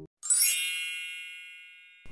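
A single bright, high-pitched chime that strikes about a quarter second in and rings out, fading away over the next second and a half.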